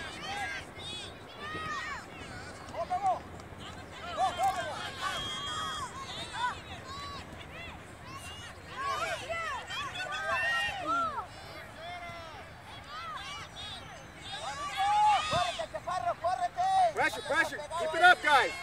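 Scattered, overlapping shouts and calls from players and sideline spectators at a youth soccer game, none clear enough to make out as words. The shouting grows louder near the end.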